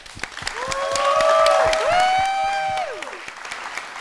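Studio audience applauding, with a few long held whoops from the crowd over the clapping in the middle.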